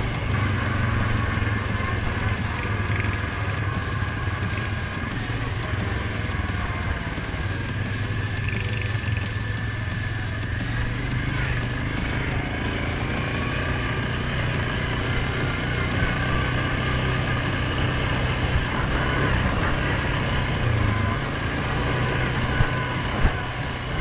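Suzuki KingQuad 750 ATV engine running steadily at riding speed, a constant low drone with no sharp changes in revs.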